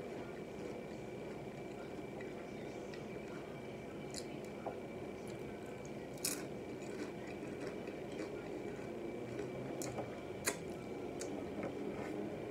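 Close-miked chewing of loaded tortilla-chip nachos: wet, squishy mouth sounds with a few sharp mouth clicks, the loudest about six seconds in and about ten and a half seconds in.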